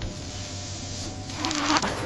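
Steady electric buzzing with a hiss over a low hum, growing louder and harsher for a moment near the end.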